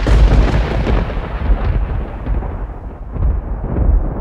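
Thunder sound effect: a sudden loud crash that rolls on as a deep rumble, slowly fading.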